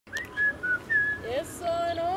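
Someone whistling four short, high notes, some with slight slides in pitch, followed about one and a half seconds in by a voice starting a held sung note.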